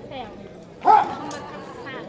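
A dog barks once, short and loud, about a second in, over the chatter of a crowd.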